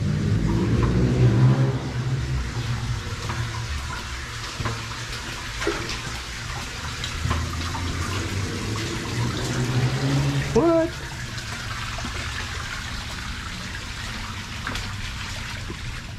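Shallow creek water running and splashing along the floor of a concrete box culvert and dropping in a small waterfall at its outlet into the creek bed, echoing inside the culvert.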